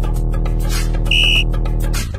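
Workout background music with a steady beat, and about a second in a single short electronic beep marking the end of the exercise interval and the start of the rest period.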